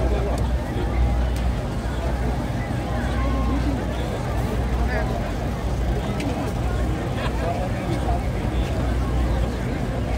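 Babble of a large walking crowd, many voices talking at once without a break, over a steady low rumble.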